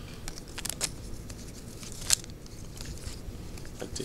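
Glossy trading cards being handled and shuffled through a stack by hand, with a series of short sharp card snaps and slides, the loudest about two seconds in.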